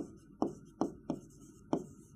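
A pen or stylus tapping and knocking on the glass of an interactive display while handwriting: five sharp, short taps at uneven spacing.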